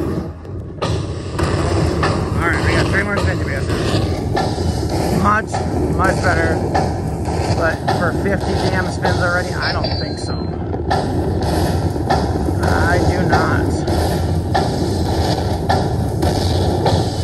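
Buffalo Link slot machine tallying a bonus win, the win meter counting up, with a steady, dense din from the machine and the casino around it and short wavering tones over it at several points.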